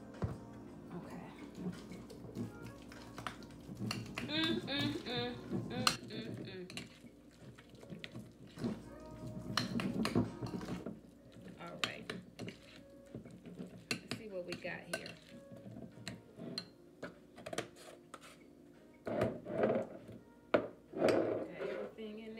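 A metal fork stirring and mashing a thick filling in a glass mixing bowl, with repeated clinks and scrapes against the glass. Background music and a voice are heard under it.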